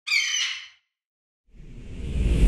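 A bird-of-prey screech sound effect, one short cry under a second long, followed about a second and a half later by a swelling whoosh with a deep rumble underneath.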